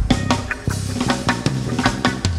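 Live pop-rock band playing an instrumental passage with no vocals: drum kit keeping a steady beat over bass, guitars and keyboard.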